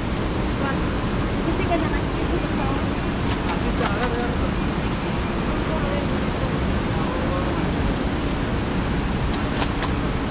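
Steady rushing background noise, even throughout, with faint indistinct voices and a few light clicks about four seconds in and near the end.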